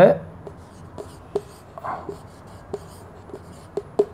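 Marker writing on a whiteboard: a string of light taps and short scratchy strokes as words are written out.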